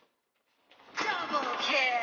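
A comedic video-game 'double kill' sound effect: silence, then a sudden loud rush about a second in, with falling pitched sweeps.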